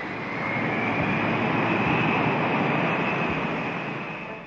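Jet airliner passing by: a rushing noise that swells to a peak around the middle and then fades away, with a faint high whine running through it.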